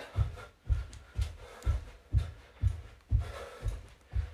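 Stockinged feet landing on a carpeted floor during star jumps (jumping jacks): dull thuds, about two a second, in an even rhythm.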